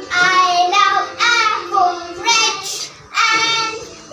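A young girl singing solo, unaccompanied, in short phrases with held notes and pitch glides, with brief breaks between phrases.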